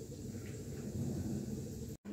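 Faint, steady low hum of background noise, with no distinct event.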